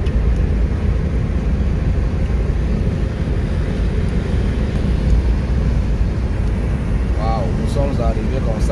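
Steady road and engine noise of a car cruising along a highway, heard from inside the cabin as a low rumble. A man's voice starts near the end.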